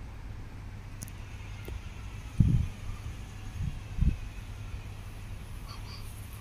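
Distant, steady low rumble of a Boeing 737-800's CFM56 jet engines as the airliner passes high overhead. A few short low thumps cut in about two and a half and four seconds in, the first the loudest.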